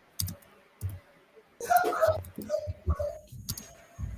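Irregular clicks and light taps, several a second, with a short stretch of faint, indistinct voice in the middle.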